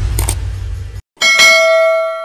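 A bell-ding sound effect, like a notification bell, strikes about a second in and rings on with a clear steady tone. Before it, a low rumble with a couple of quick clicks cuts off abruptly.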